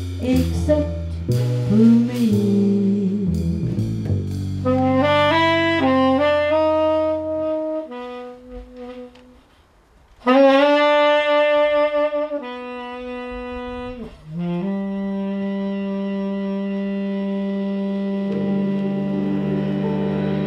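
Small jazz band with drum kit and upright bass playing, then a saxophone rising in steps. After a near-silent pause about eight seconds in, the saxophone comes back loud, holding long notes and changing pitch only a few times.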